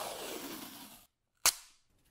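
Blue painter's masking tape being pulled off its roll: a rasping peel of about a second that drops in pitch as it goes. It is then torn off with one sharp, loud snap about a second and a half in.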